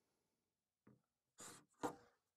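Near silence with three faint, brief rustling noises: one a little under a second in and two close together near the end.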